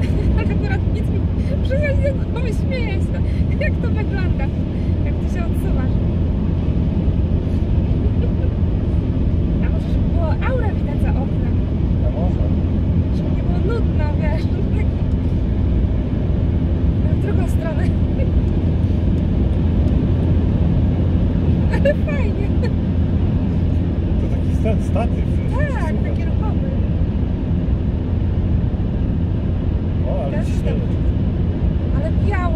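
Steady low road and engine rumble inside the cabin of a moving car, with faint voices over it.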